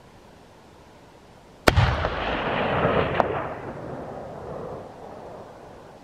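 A single hunting-rifle shot about two seconds in, its report rolling and echoing around the mountain slopes and fading over about four seconds, with a fainter crack about a second and a half after the shot.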